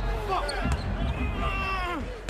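Basketball game sound in an arena: a basketball bouncing on the hardwood court amid crowd noise and voices, with one voice held near the end.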